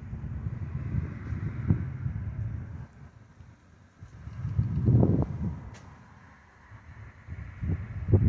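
Wind buffeting the microphone in uneven low gusts, loudest about five seconds in and again near the end.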